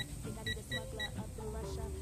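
Powerbuilt digital torque socket adapter giving short electronic beeps, four in about the first second, each about a quarter to half a second apart, as its buttons are pressed to set the target torque.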